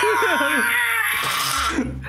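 Men laughing loudly and breathily, dying away near the end.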